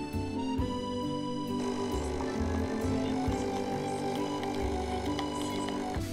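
Background music: slow, held chords over a slowly changing bass line.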